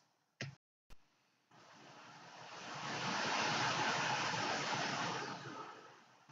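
A car passing along the street: a rush of road and tyre noise that swells over a couple of seconds and fades away near the end, after two brief clicks in the first second.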